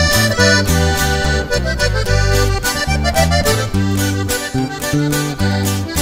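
Norteño band playing an instrumental break between a corrido's sung verses: button accordion carrying the melody over guitar and a walking bass line in a steady rhythm.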